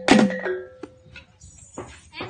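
Row of small kettle gongs on a wooden frame, struck once just as the playing stops. The stroke rings out with a steady tone that fades over about half a second.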